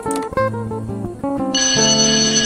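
Background music: a plucked melody of short notes. About one and a half seconds in, a bright bell-like ringing joins it, as a Subscribe animation appears.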